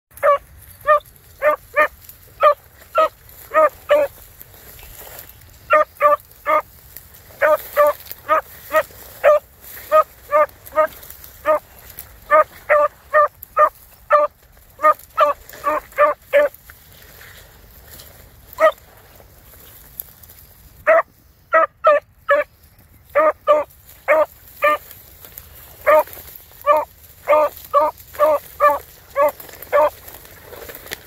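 A dog barking in quick runs of short, high yips, several a second, with brief pauses between runs.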